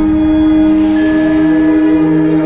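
Label outro music: a loud sustained chord held steady, its lower note shifting down about a second in.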